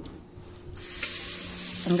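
A steady hiss that starts abruptly less than a second in and holds at an even level.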